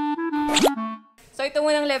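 Short playful music jingle of held notes with a quick rising slide sound effect about halfway through, then a woman starts speaking.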